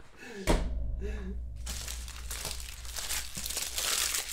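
Trading-card pack wrapper crinkling as it is handled and torn open, a dense rustle starting about a second and a half in.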